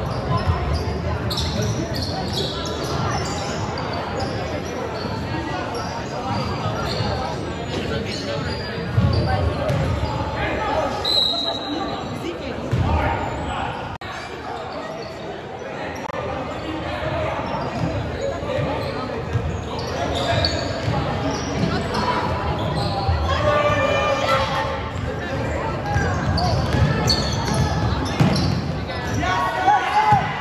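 Basketball game in a large gym: the ball bouncing on the hardwood floor and players' feet moving, with voices of players and spectators echoing through the hall.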